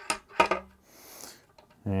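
A few sharp metallic clicks and knocks, one ringing briefly, as a wooden crossbar is fitted into a light stand's metal mount and the mount is hand-tightened. A short soft hiss follows about a second in.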